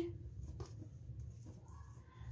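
Faint soft rubbing of hands rolling a ghee-brushed, flour-dusted whole-wheat dough sheet into a rope on a wooden board, with a light tick about half a second in.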